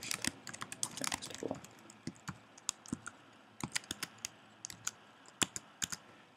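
Computer keyboard being typed on: quick irregular keystrokes in uneven bursts, thinning out around the middle.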